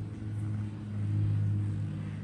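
A steady low hum with a few faint higher tones above it, running under the pause in speech.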